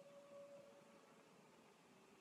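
Near silence: room tone, with a faint steady tone that fades out about a second in.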